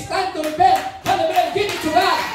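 Voices singing a worship song with rhythmic hand clapping.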